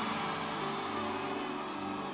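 Soft background music of sustained held chords that change about half a second in, heard over the faint hum of a large hall.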